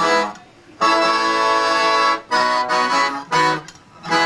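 Piano accordion playing held chords: a long chord, then a few shorter ones, with brief breaks about half a second in and just before the end.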